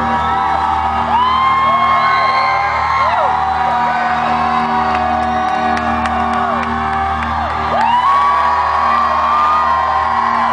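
A live rock band holds a chord while a crowd sings along in long held notes. Many voices slide up onto each note and drop off it, in two long waves, with whoops mixed in.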